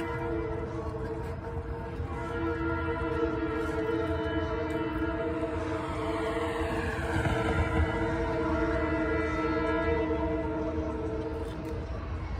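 Train horn blowing one long held chord over a low rumble, cutting off shortly before the end; partway through, a falling tone sweeps down through the higher pitches.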